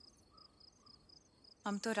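Faint crickets chirping in a regular high rhythm. A woman's voice begins near the end.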